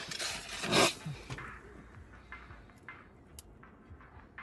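A man drinking from a plastic bottle: slurping and gulping, with a loud breathy burst about a second in, then only a few faint clicks.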